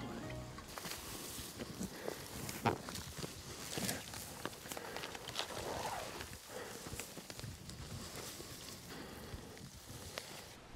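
Footsteps and rustling of dry grass and clothing as a person walks uphill through tall grass: irregular crunches and swishes.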